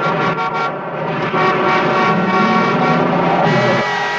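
Motor-vehicle engine sounds in a TV ident soundtrack, several pitched tones layered and running steadily, growing a little louder about a second in.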